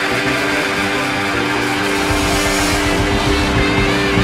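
Live rock and roll band recording in an instrumental passage with no singing, the band playing on under steady held notes.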